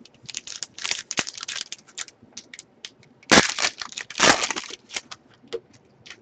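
Hockey card pack wrapper being torn open and crinkled by hand: irregular crackling rustles, with two louder rips a little over three and about four seconds in.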